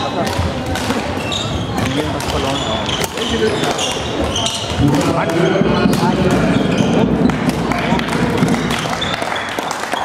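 Badminton rally: sharp racket hits on the shuttlecock and short shoe squeaks on the wooden sports floor, over the steady chatter and echo of a busy sports hall.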